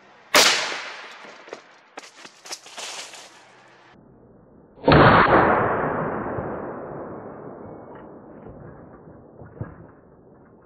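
A 6.5 PRC rifle shot about a third of a second in, followed by a few sharp knocks. About five seconds in, the shot comes again slowed down: a sudden deep boom that fades slowly over several seconds.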